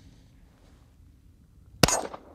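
A single 9mm pistol shot from a Glock 17 Gen5 MOS near the end, after a near-silent stretch, with a short ring after the crack.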